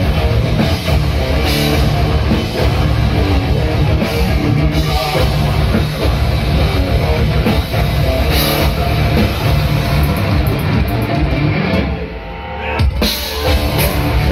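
Technical death metal band playing live at full volume: pounding drum kit and heavy distorted guitars, packed and unbroken. Near the end the sound thins out briefly before the whole band comes back in.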